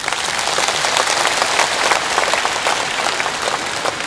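Audience applause: many hands clapping in a dense, steady patter that fades out near the end as speech resumes.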